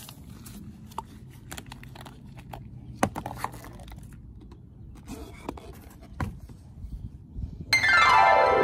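Scattered quiet clicks and taps of gloved hands handling a plastic motor-oil bottle and a new oil filter. Near the end, background music comes in loudly with a downward-sweeping sound.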